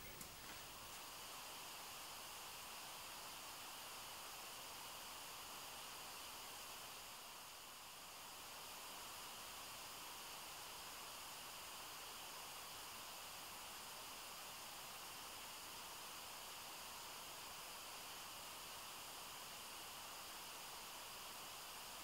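Faint, steady outdoor hiss with no distinct events.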